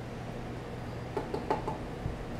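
A few light knocks and clicks, the strongest a little past halfway, as small cream cartons are handled and tipped over a bowl. A steady low hum runs underneath.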